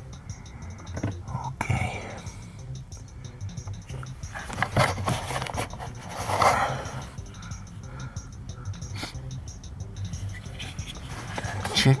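Hands working a wiring-harness connector and the surrounding plastic parts: scattered scrapes, rustles and small clicks, with a steady low hum underneath.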